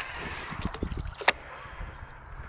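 Handling noise from a spinning rod and reel: a short hiss, then one sharp click a little over a second in, over light wind on the microphone.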